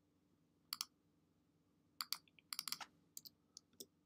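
Short, sharp clicks of a computer mouse and keyboard in irregular runs: a quick double click a little before one second in, then a cluster of rapid clicks from about two seconds on.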